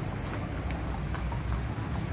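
Horse's hooves clip-clopping on a concrete path at a walk, a string of separate hoof strikes.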